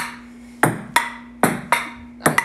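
Table tennis rally: a celluloid ping-pong ball clicks off paddles and the table five times, at uneven spacing, each hit with a short bright ring.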